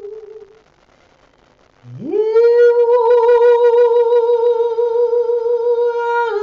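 A woman singing a Tao song in long held vowel notes. One note fades out just after the start. After a short breath, about two seconds in, she slides up from low into a new note and holds it steady with a slight wavering.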